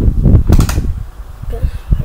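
Electric fan running, its air buffeting the microphone with a low, uneven rumble, and a quick clatter of knocks about half a second in.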